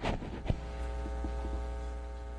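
Steady electrical mains hum, a low buzz with many evenly spaced overtones, picked up through the room's audio system. It comes in suddenly with a click at the start, and there is a sharp thump about half a second in.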